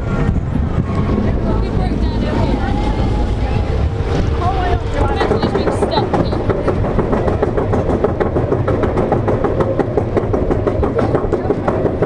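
Steel roller coaster train rolling along the track, then engaging the lift-hill chain about five seconds in. A rapid, steady clicking of the anti-rollback ratchet follows over a low rumble as the train climbs.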